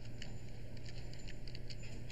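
Typing on a computer keyboard: a handful of quiet, irregularly spaced key clicks over a low steady hum.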